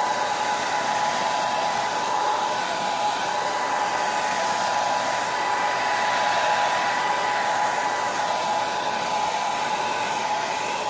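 Handheld hair dryer running steadily, blowing hot air onto plastic shrink wrap to shrink it around a basket. A rush of air with a steady whine.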